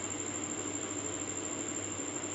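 Steady background hiss with a faint low hum and no distinct sound events.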